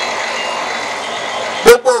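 A steady rushing background noise with faint thin tones in it, broken near the end by a sharp, loud pop on the public-address microphone as a man starts speaking again.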